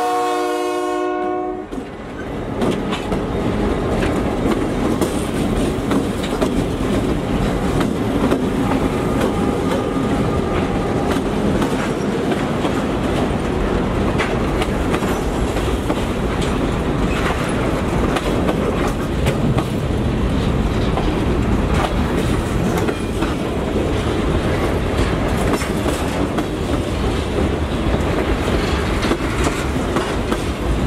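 A diesel locomotive horn sounds a multi-note chord that cuts off about two seconds in. Then a string of Georgia Central EMD GP38-2 locomotives, with 16-cylinder two-stroke diesels, rolls close by, followed by freight cars clattering steadily over the rail joints.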